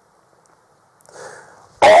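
A brief pause, then about a second in a short, soft intake of breath by a man, and his speech starting again near the end.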